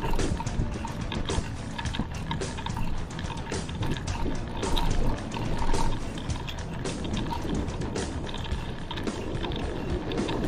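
Wind rushing over the microphone of a handlebar-mounted camera, with irregular clicks and rattles from a mountain bike rolling along a concrete road.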